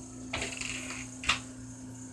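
A brief rustling or scraping noise, then a single sharp click, over a faint steady hum.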